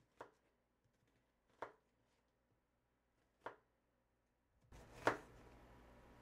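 Knife cutting through an onion onto a plastic cutting board: four separate cuts, each a short knock, about one and a half to two seconds apart, the last the loudest.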